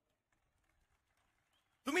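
Near silence: a pause in a man's speech, with his voice coming back just before the end.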